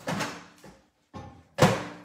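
A door being knocked open and slammed shut: a bang at the start, a lighter knock about a second in, and the loudest bang near the end.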